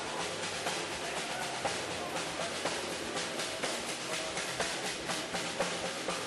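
Drums being played in a fast, dense run of strokes with regular louder accents.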